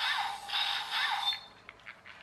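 Small infrared remote-controlled toy robot driving on a wooden floor, giving a repeating warbling sound that rises and falls in pitch. The sound stops a little over halfway through, leaving a few faint clicks.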